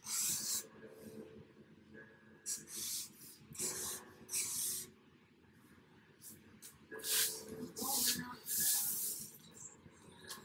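Felt-tip marker being dragged across poster board in short strokes, each a brief scratchy rub lasting about half a second. There are several strokes in quick succession, a pause of a couple of seconds in the middle, then another run of strokes.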